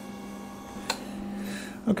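24-volt gear motor of a slow-speed carbide grinder running steadily, a low hum with faint higher whines, as the lap wheel turns; a single sharp click about a second in.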